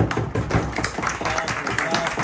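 Irregular hand claps and taps on a wooden table, mixed with a few voices.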